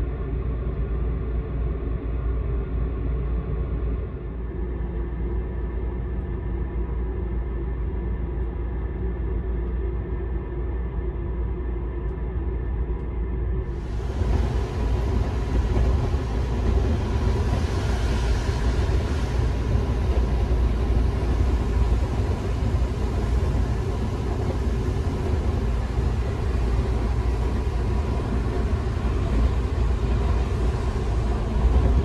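Steady low rumble of a moving sleeper train heard from inside the compartment. About 14 s in the sound turns brighter and a little louder, with more hiss above the rumble.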